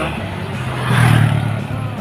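Small motorcycle engines running on the road with road noise. The engine hum swells to its loudest about a second in, then eases off.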